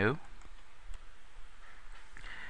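A faint computer mouse click over a steady low hiss of the recording.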